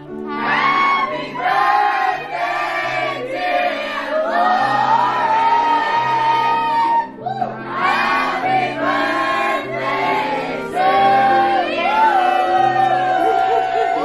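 A group of voices singing together over background music with a steady, stepping bass line, starting suddenly.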